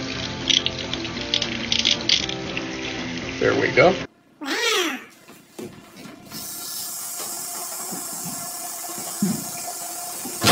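Background music for the first few seconds, then a couple of short cries that glide up and down in pitch, then water running steadily from a bathroom tap into a sink.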